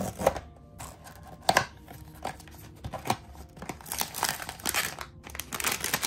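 Blind-box packaging being torn open and crinkled by hand, with sharp clicks about a quarter second and a second and a half in and denser crinkling near the end.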